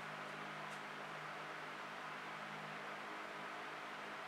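Steady, faint background hum and hiss with no distinct events: room tone.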